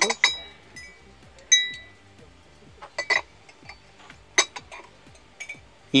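Ceramic lids clinking against ceramic mugs as they are lifted and set back, about six short clinks, each ringing briefly, the loudest about one and a half seconds in.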